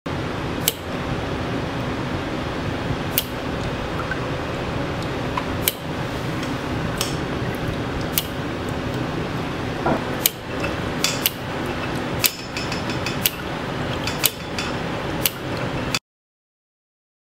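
Steady hum of running lab apparatus with sharp clicks, about every two and a half seconds at first and closer together near the end, as the rig switches hot and cold water onto a coiled nylon 6 fishing-line artificial muscle.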